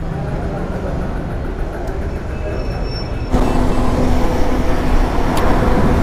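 Low steady rumble of a motorcycle, then a little past halfway a sudden jump to the louder steady drone of the motorcycle under way: a low engine hum with wind and road noise on the microphone.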